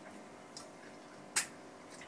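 Quiet room tone broken by a faint click, then one short, sharp wet lip smack about a second and a half in, from a man tasting hot sauce.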